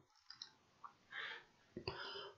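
Near silence broken by a few faint, short computer mouse clicks.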